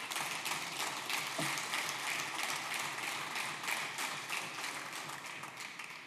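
Audience applauding, many hands clapping, dying away near the end.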